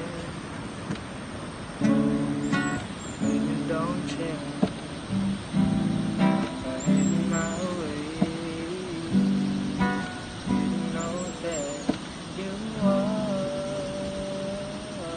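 Acoustic guitar strummed in repeated chords while a young man sings along, holding a long note near the end.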